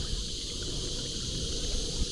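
Steady high-pitched buzz of insects from the riverbank bush, over a low rumble.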